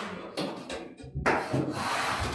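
Chalk scratching on a blackboard in a few short writing strokes, then one longer stroke from a bit past the middle as a line is drawn.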